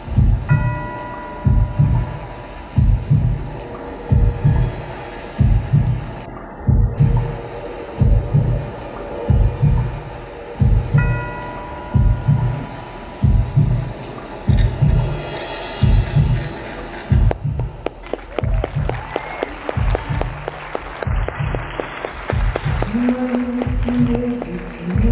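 Live band's instrumental intro: a deep double thump about once a second, like a heartbeat, from drums and bass, with a few sustained guitar notes above. From about 17 s a fast run of repeated strikes joins, and a held low note, likely from the saxophone, comes in near the end.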